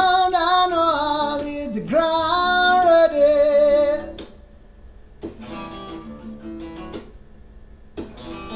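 A male singer holds two long sung notes with vibrato over acoustic guitar. About halfway through, the voice stops and the acoustic guitar plays on alone, more quietly, in separate picked notes.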